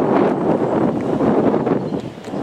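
Wind buffeting the microphone: a steady rushing noise.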